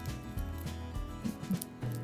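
Quiet background music, with fingernails scratching and crinkling at the plastic shrink-wrap on a deck of cards.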